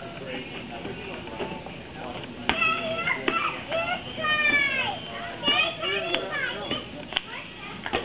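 High-pitched children's voices calling and squealing, their pitch sliding up and down, loudest in the middle of the stretch. A few sharp slaps cut through, big rubber play balls being caught by hand.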